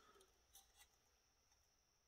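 Near silence: room tone, with two faint small clicks about half a second and close to a second in.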